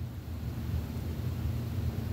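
A low, steady background hum with faint hiss and no distinct events.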